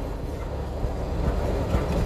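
Steady low road and engine rumble inside a moving vehicle's cab.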